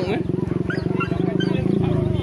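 An engine idling close by with a steady, even low pulsing, with voices over it.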